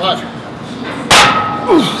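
Iron plates on a loaded barbell clank once about a second in, with a short metallic ring, as one rep of a bent-over row is pulled. A short falling grunt follows.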